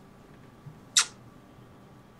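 A pause with low background and a single short, hissy sound about a second in, like a quick breath or sniff near a microphone.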